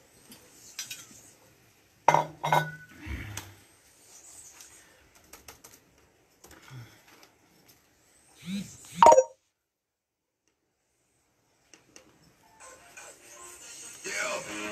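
Scattered knocks and clinks from a plastic water bottle being handled after a drink, with a short rising sound about nine seconds in. Music fades in near the end.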